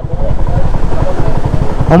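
Motorcycle engine idling through an open exhaust pipe: a loud, fast, even low putter.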